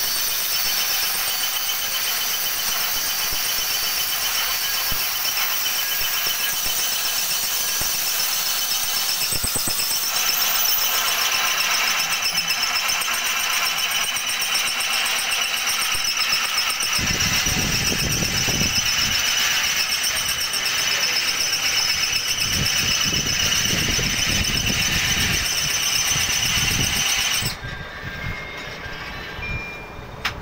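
Angle grinder with a cutting disc cutting through a steel flat bar: a loud, steady, high-pitched whine with a few held tones, joined by a lower rumble about halfway through, and cutting off abruptly near the end.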